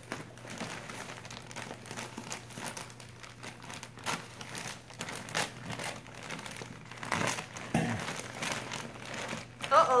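Christmas wrapping paper crinkling and rustling in an irregular run of crackles as a present is unwrapped by hand.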